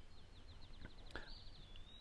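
A faint bird trill: a rapid series of short, high, falling notes, about eight a second, running into a longer held whistle near the end.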